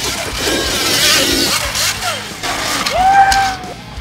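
Electric dirt bike at speed over loose dirt: a rush of tyre and dirt noise with the electric motor's whine gliding up and down. The whine rises sharply about three seconds in and then slowly falls away.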